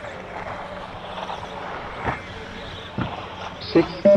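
Radio-controlled 2wd buggy running on an astroturf track: a steady, even motor and tyre noise with no sharp events.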